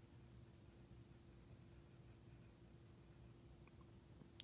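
Near silence: the faint rubbing of a stylus moving over a tablet's glass screen while colouring in, over a low steady hum.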